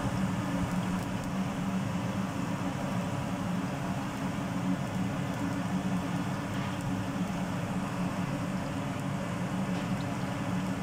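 Hot oil sizzling in a frying pan as a batter-coated stuffed green chilli is lowered in to deep-fry, over a steady low hum.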